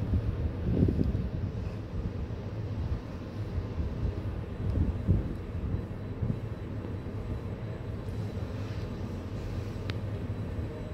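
ThyssenKrupp passenger lift car travelling upward in its shaft: a steady low rumble, swelling louder about a second in and again around five seconds in.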